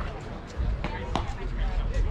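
Wind rumbling on the microphone with distant voices calling across the field, and two sharp knocks about a second in.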